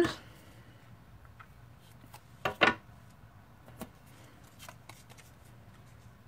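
Cardstock panels being handled and pressed down by hand: a quick pair of paper taps and rustles about two and a half seconds in, then a few faint clicks.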